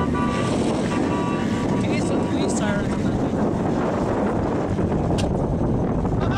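Car engines running as an ex-police interceptor sedan and another car race round a dirt field track at a distance, largely covered by wind buffeting the microphone.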